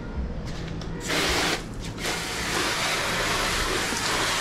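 Water jet sprayed onto a scooter: a short burst about a second in, then a steady spray from about two seconds in, over a steady low hum.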